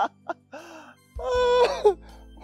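A man laughing hard: a couple of short bursts, then a long, high, drawn-out cry of laughter a little past a second in, over quiet background music.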